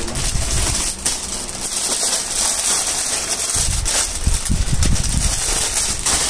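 Plastic garment packaging crinkling and rustling as a pair of jeans is pulled out of a plastic-wrapped bundle, with low thumps of handling at the start and again past the middle.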